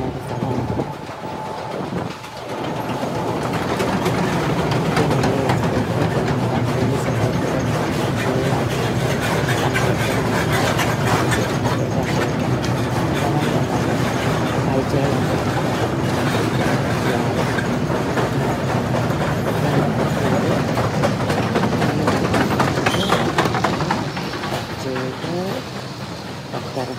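London Underground train pulling out of the platform, its wheels rumbling and clattering on the rails in the tunnel. The noise builds a few seconds in, stays loud, and falls away near the end.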